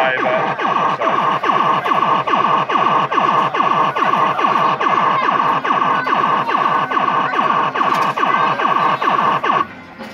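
A 'Party Time' fruit machine playing a repeating electronic sound effect: rapid falling bleeps, about four or five a second, over a steady high tone, cutting off suddenly near the end.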